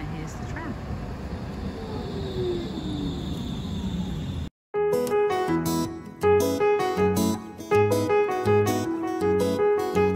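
An electric tram pulling into the stop, with a falling whine as it slows over a steady noisy rumble. About four and a half seconds in this cuts off and piano music begins.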